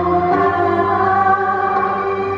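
Woman singing a Cantonese opera-style song through a microphone and PA, holding long sustained notes.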